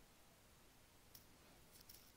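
Near silence: faint room tone with a few small, faint clicks, one about a second in and a couple more near the end.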